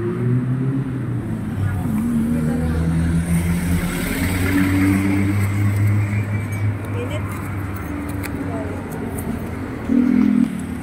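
Road traffic: vehicle engines running and passing on a busy road, a steady low engine hum that shifts in pitch as vehicles go by.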